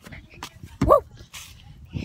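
A girl's loud exclaimed "whoa", rising then falling in pitch about a second in, over low thumps and rumble from the phone microphone being jostled as she runs.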